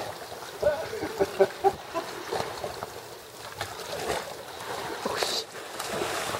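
A dog jumping into shallow sea water, with a brief splash near the end, over a steady wash of water.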